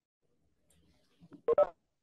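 A quick pair of electronic tones about one and a half seconds in, a Webex meeting's entry tone as a participant joins the call.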